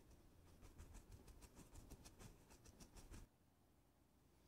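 Faint, quick scratchy strokes of a dry flat brush rubbed rapidly over canvas to blend out wet acrylic paint, about six strokes a second, stopping abruptly a little over three seconds in.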